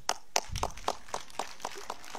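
A few hands clapping in a steady rhythm, about four claps a second, applauding a pupil's correct answer.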